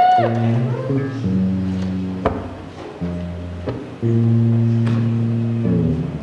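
Electric guitar played through a small amplifier: a slow run of sustained low chords, changing about every second or two and ringing out, with a couple of sharp clicks between them.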